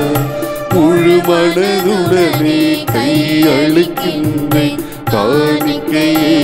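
A Tamil Catholic offertory hymn. A singer holds a wavering, ornamented melody with short breaks, over instrumental accompaniment and light percussion.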